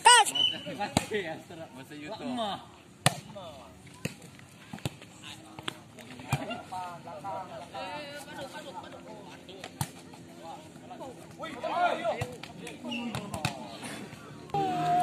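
Players and onlookers shouting and chattering, with a loud shout at the start, while a volleyball is struck by hand several times in a rally, each hit a sharp slap.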